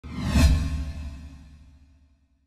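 Title-card whoosh sound effect with a deep bass hit, loudest about half a second in and then fading away.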